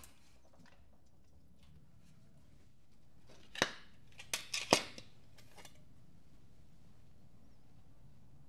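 A handful of sharp clicks and knocks packed into about a second, starting three and a half seconds in: the halves of a 3D-printed PLA+ plastic die being pulled apart and set down on a steel fixture table, freeing the pressed aluminium sheet. The rest is a low, quiet room hum.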